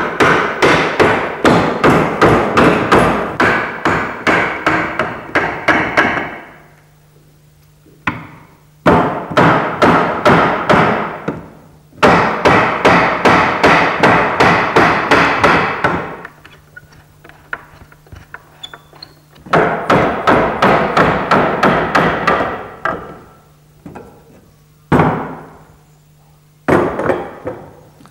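Wooden mallet striking a maple dining chair frame, knocking its glued joints apart: rapid sharp blows, several a second, in runs of a few seconds with short pauses between.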